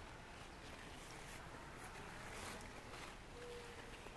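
Faint rustling of blackberry leaves and canes as a hand brushes through them, over quiet outdoor background; a short faint hum near the end.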